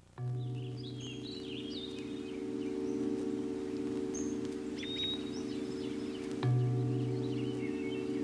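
Ambient soundtrack of a steady musical drone of several held low tones, with birds chirping above it. The lowest tone swells in again about six and a half seconds in.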